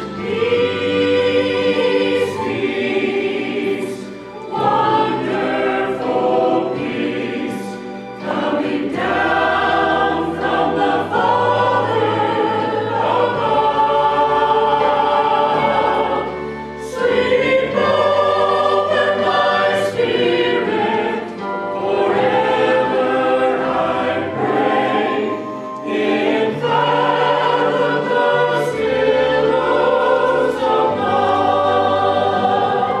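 Church choir of mixed men's and women's voices singing a hymn with accompaniment, in phrases broken by short pauses every few seconds.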